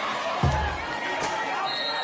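Background music with a deep bass hit about every one and a half seconds, one falling about half a second in, and a voice over it.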